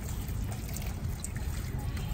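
Water from a garden hose running and splashing onto a plastic toy fire truck and wet paving: a steady trickling splash.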